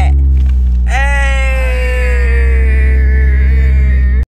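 A woman's long drawn-out "ohhh", held for about two and a half seconds and falling slowly in pitch, over the steady low rumble of a car's cabin on the road.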